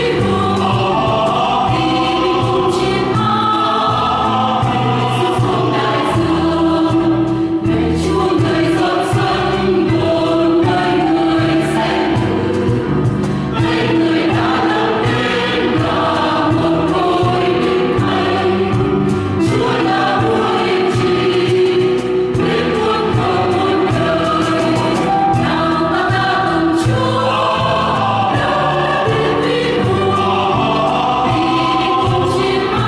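Mixed church choir singing a Vietnamese Catholic hymn in harmony, the sung chords held and changing without a break.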